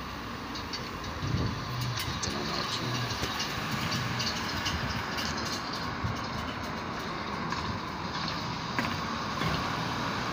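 Cars driving past on the road in front of the terminal, over a steady hum of outdoor traffic noise, with a few faint clicks.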